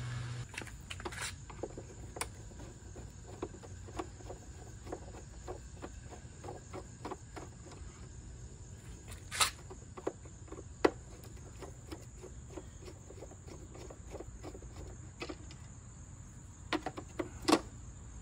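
Light clicks and taps of a screwdriver turning out the screws of a motorcycle's chrome headlight trim, with a few sharper metallic knocks, the loudest about halfway through and just before the end as the trim comes free. A steady high thin tone runs underneath.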